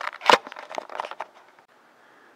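Handling noise: a few sharp knocks and clicks, loudest in the first half second, with smaller clicks over the next second before it goes quiet.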